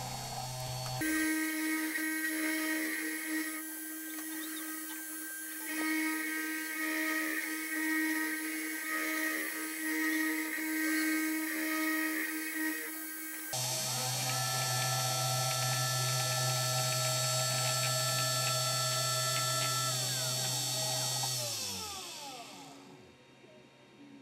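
A 3018 CNC router's 775 spindle motor runs with a steady high whine while a V-bit engraves laminated MDF. The tone shifts abruptly twice. Near the end the spindle winds down in pitch and stops as the carve finishes.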